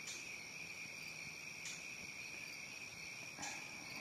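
Crickets chirping in a steady, continuous high-pitched trill, with a faint rustle about three and a half seconds in.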